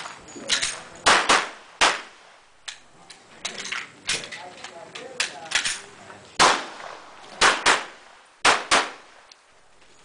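Handgun shots fired in a rapid course of fire, many as quick pairs a fraction of a second apart, with short pauses between groups as the shooter moves between targets. Each shot is sharp and loud with a brief ringing echo.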